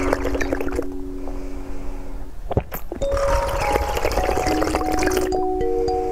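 Background music of long, held bell-like notes, over close-miked drinking of a jelly drink from a plastic bottle: small wet clicks in the first couple of seconds, then a stretch of slurping and sipping from about halfway through.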